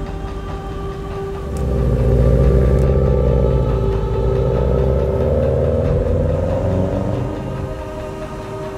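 Subaru WRX's turbocharged flat-four engine accelerating past and away, coming in loud about a second and a half in, its pitch rising over several seconds before it fades near the end. A steady musical drone sounds underneath.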